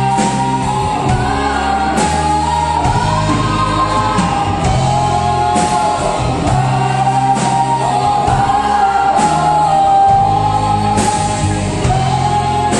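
A woman singing lead with a live rock band: electric guitars, bass and drum kit playing behind her, with a cymbal crash every couple of seconds.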